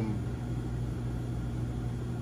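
Steady low hum with an even hiss: the constant background noise of the room, with no other event standing out.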